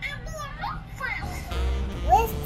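A young girl's sing-song voice, with music in the background.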